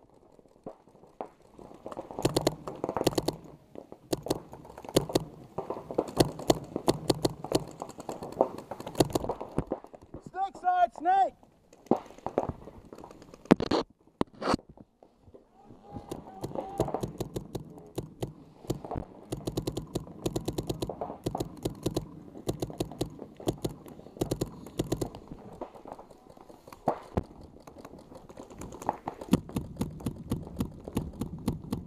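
Paintball markers firing in rapid strings of shots that stop and start again, with two louder sharp cracks about fourteen seconds in.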